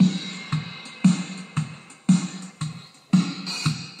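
A swing drum beat loaded as a WAV sample, played back by a Digitech JamMan Solo XT looper pedal through a Quilter guitar amplifier. It runs as low drum hits about twice a second under a steady high wash.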